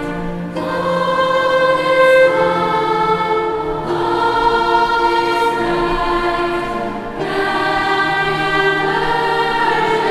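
Choir singing long, held notes in phrases of a few seconds, with short breaks between phrases about half a second in, near four seconds and near seven seconds.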